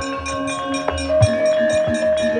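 Javanese gamelan playing: sustained ringing metallophone notes that step to new pitches about a second in, with low drum strokes and a rapid, even ticking on top.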